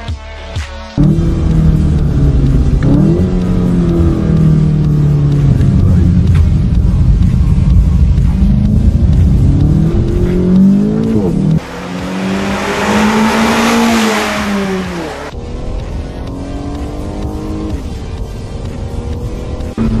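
Car engines heard from inside the cabin in several short clips in turn, the engine note climbing through the revs and dropping sharply at gear changes. In the middle a loud hiss joins the engine for about three seconds. Electronic music ends about a second in.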